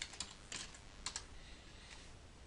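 Faint typing on a computer keyboard: a few light keystrokes, most of them in the first second or so.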